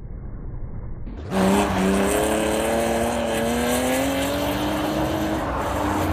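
Race car engine on an ice track: after about a second of dull, muffled running, it revs with the pitch climbing steadily for about four seconds, over a loud hiss of tyre and wind noise, then briefly drops and picks up again near the end.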